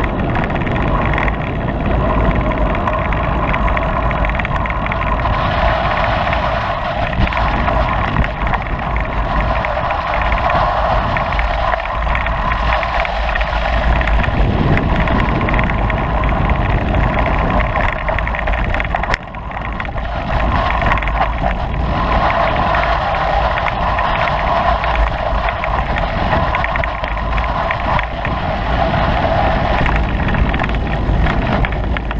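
A vehicle's engine running steadily as it rides along a trail, under a low rumble, with a brief dip in loudness about two-thirds of the way in.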